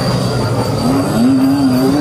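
Loud soundtrack of a haunted-house maze: a dense rumbling wash with a steady high whine, and a long, low wavering tone that comes in about a second in.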